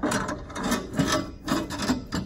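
Steel propane cylinder being set back into its holder and shifted into place, its base scraping on the mounting tray: several short scrapes in quick succession.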